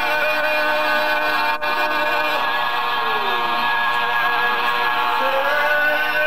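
A group of men singing a slow devotional chant together, holding long drawn-out notes.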